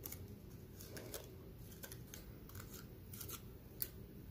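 Scissors snipping through cardstock in a few faint, short cuts, trimming a straight line along a die-cut edge.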